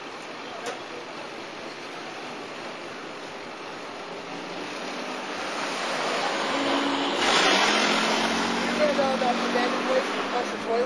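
A vehicle passing on the street. Its tyre and engine noise swells over several seconds to a peak a little past the middle, where a low engine hum comes in, and then stays up. A faint voice is heard near the end.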